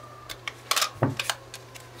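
Handling noise from a handheld wireless microphone: several sharp clicks and knocks about half a second to a second and a half in, over a low steady hum.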